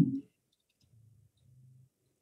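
Faint, scattered clicks of a computer keyboard being typed on, with a faint low hum partway through.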